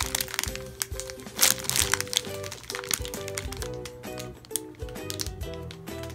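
Background music plays throughout while a clear plastic bag crinkles a few times as it is handled, loudest about one and a half seconds in.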